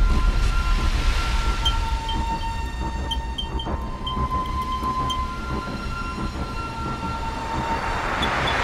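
Dark sound design for an animated logo intro: a deep rumble under long steady high tones that change pitch now and then, with a few faint short electronic chirps in the middle and a rising whoosh building near the end.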